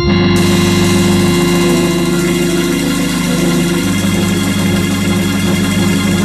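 Hammond organ holding one long, loud sustained chord to close a jazz organ-trio number, with a cymbal wash ringing over it.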